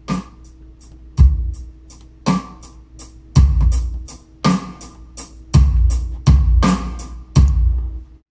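Music playing back from a Pro Tools First session: a drum-kit pattern with heavy kick-and-snare hits about once a second, and a steady low tone underneath. Playback stops suddenly at the end.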